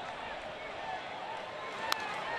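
Ballpark crowd murmuring steadily, then a single sharp crack of a baseball bat on the ball near the end as the batter fouls off the pitch.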